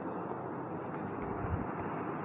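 Steady, even rushing background noise, with one soft low thump about one and a half seconds in.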